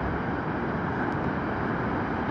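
Steady, even rush of ocean surf breaking along a sandy beach, mixed with wind.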